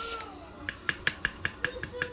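Light clicks, several in quick succession, as a jar of dip with a plastic lid is gripped by the lid and turned on a table.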